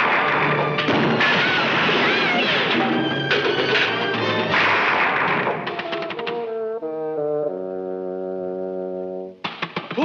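Cartoon sound effects of a brawl, with a jumble of crashes and smashing over orchestral music for about five and a half seconds. Then the crashing stops and brass plays a few held chords.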